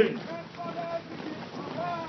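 A gap between lines of a military running cadence: wind on the microphone, with the faint voice of the single cadence caller.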